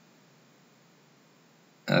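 Near silence: faint room hiss during a pause in speech, then a voice starts with a hesitation "uh" right at the end.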